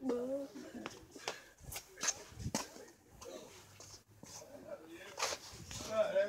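Faint voices with scattered, irregular knocks and taps from footsteps on a concrete floor.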